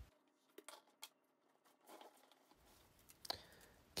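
Near silence: room tone with a few faint, brief clicks of handling noise.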